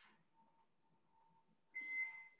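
Near silence, then near the end a brief, steady, high-pitched tone.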